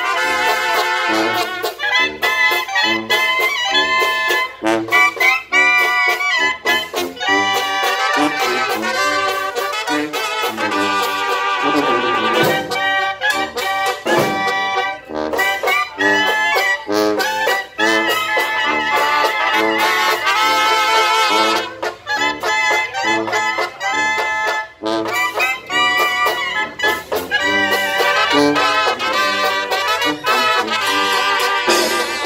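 Brass band of trumpets, trombones, clarinets and a sousaphone playing a tune together without pause.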